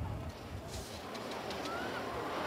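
A bird calling over faint outdoor background noise, with a short rising whistle near the end.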